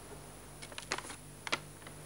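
A sheet of paper crackling and rustling as it is handled, with a few short, sharp crinkles from about half a second in.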